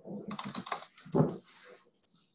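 Computer keyboard typing: a quick run of keystrokes, with one louder key strike a little over a second in.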